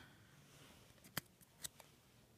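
Near silence with two short clicks about a second in and half a second apart, then a fainter one: trading cards being slid and flicked over in the hand.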